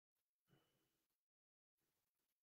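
Near silence: no audible sound.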